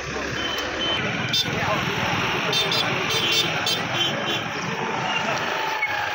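Crowd chatter: many men talking at once. In the middle, a quick run of short, high-pitched beeps sounds over it.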